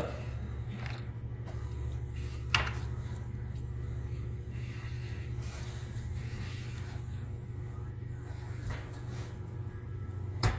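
Plastic pry tool working along the seam of a Dell Inspiron 3583 laptop's plastic bottom cover, with one sharp click about two and a half seconds in and a few fainter clicks as the case clips are worked loose.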